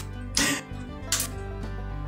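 Two short, light clicks of pencils and their case being handled, one about half a second in and one just after a second, over soft background music.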